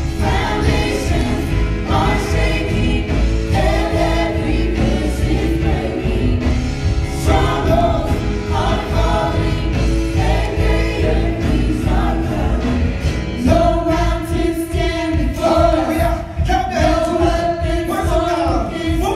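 Live gospel worship song: a man leading the singing into a microphone, backed by a small group of singers over instrumental accompaniment with a steady bass.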